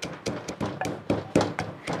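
A wooden pestle pounding roasted peanuts and spices in a wooden mortar, crushing them fine: quick repeated knocks of wood on wood, about three or four a second.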